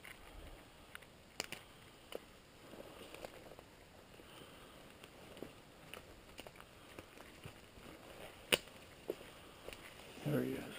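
Footsteps on dry leaf litter and brushing through small evergreens, with scattered twig snaps; one sharp snap near the end is the loudest.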